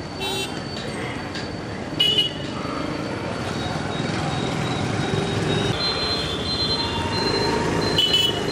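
Outdoor background of indistinct voices and traffic noise, with a short, loud, high-pitched sound about two seconds in, the loudest moment, and a steady high tone joining from about six seconds on.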